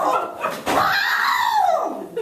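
A performer's voice imitating a donkey's bray: high-pitched calls that rise and then fall in pitch, one ending about half a second in and a second, longer one following after a short break.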